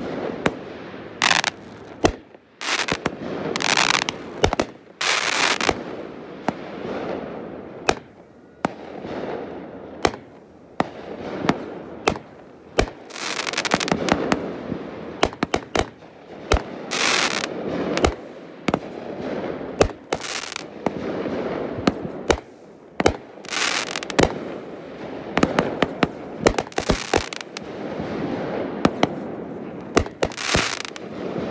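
Aerial fireworks going off in quick succession: dozens of sharp bangs from launches and shell bursts, several hissing stretches about half a second long, and a continuous rumbling echo between the hits.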